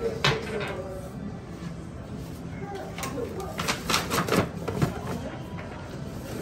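Shop background music and voices, with a sharp click just after the start and a cluster of clicks and knocks about three and a half to four and a half seconds in, as small items are handled and bagged on a checkout counter.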